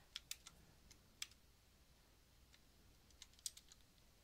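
Computer keyboard keys clicking faintly as a few characters are typed: three quick keystrokes at the start, a single one about a second in, and a quick run of about four near the end.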